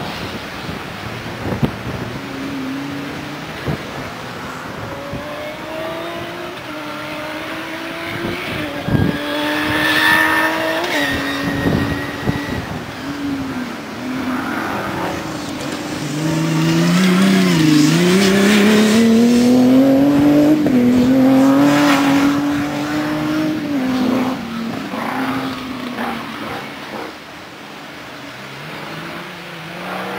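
Off-road competition race car's engine under hard acceleration, its pitch climbing and dropping as it changes gear and lifts off through the corners. It is loudest in the middle as the car passes close, then fades as it pulls away.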